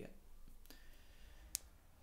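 A single short, sharp click about one and a half seconds in, over faint room noise.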